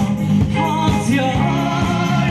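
A man singing an Eritrean song into a microphone with a live band behind him, over a steady, driving beat.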